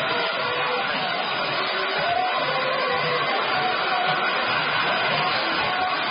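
Handheld hair dryer blowing steadily, clearing cut hair off a freshly shaved scalp, with music faint beneath it.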